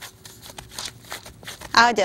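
Gloved hands pressing and patting soft gluten dough flat on parchment paper. It makes a quiet, irregular rustling and crinkling of the paper and the plastic gloves.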